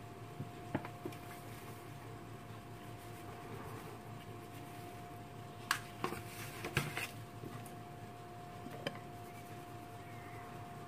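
A few short, light knocks and clinks of a glass and kitchen utensils against a ceramic mixing bowl, most of them bunched a little past the middle, over a faint steady hum.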